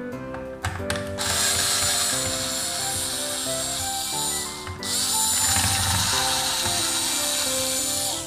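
Cordless electric screwdriver running as it backs out two screws, in two stretches of about three and a half seconds each with a brief break a little past halfway.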